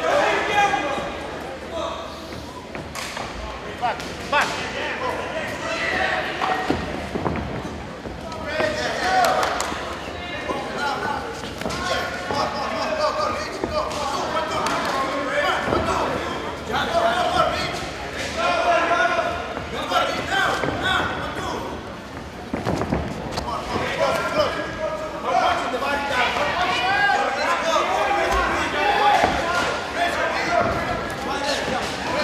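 Shouting voices from ringside at a live boxing bout, with several sharp thuds from the ring in between, in a large echoing hall.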